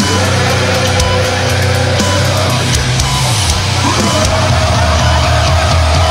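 Loud hardcore metal music, with heavy distorted guitars and bass sustaining low notes and some sliding pitches around the middle.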